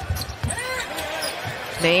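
Basketball bouncing on a hardwood court: a few low thuds.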